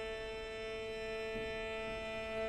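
String quartet of two violins, viola and cello holding one long, soft bowed note steady, with no change in pitch.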